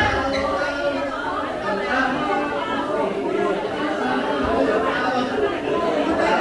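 Many people talking at once in a large room: steady, overlapping chatter of a gathered crowd, with no single clear voice.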